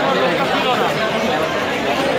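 Crowd chatter: many people talking at once in a steady, unbroken babble of voices, with no single voice standing out.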